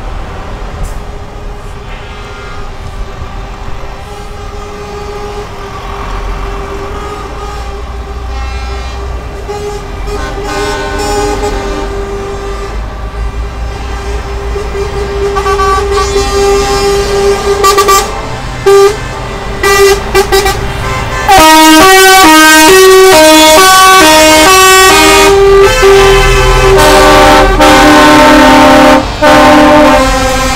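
Heavy trucks in a slow convoy passing close by with their diesel engines running while they sound air horns. Horn blasts start about halfway through, then come very loud near the end: first notes switching quickly between pitches, then long held blasts.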